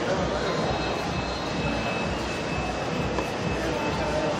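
Steady din of a busy shopping mall concourse: indistinct background chatter over a continuous low rumble of ventilation and crowd noise, with a faint high steady tone for a couple of seconds in the middle.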